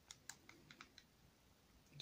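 A few faint small clicks of plastic being handled: miniature bases and a miniature in a plastic bag, all in the first second, then near silence.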